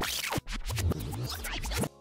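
Glitch transition sound effect: scratchy digital noise for about two seconds, with a brief break about half a second in, cutting off just before the end.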